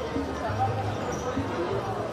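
Echoing sports-hall ambience during an indoor futsal game: scattered players' and spectators' voices, with the ball thudding on the wooden court.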